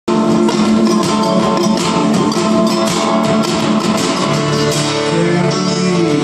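Live acoustic guitars strummed and picked, playing an instrumental passage with steady repeated strums under held notes. A lower sustained note joins about four seconds in.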